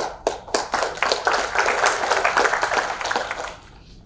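Audience applauding: a few separate claps that quickly fill out into a round of applause, which dies away about three and a half seconds in.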